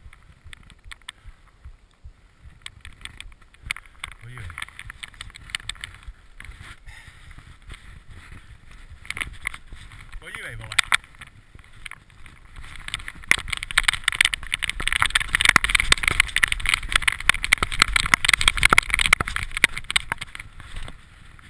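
Mountain bike descending a rocky forest trail: tyres rolling and clattering over rocks and roots, with frequent knocks and rattles from the bike. It grows much louder and busier about two-thirds of the way through.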